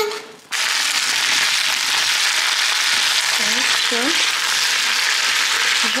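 Raw potato sticks frying in hot oil in a pan: a steady sizzle that starts abruptly about half a second in.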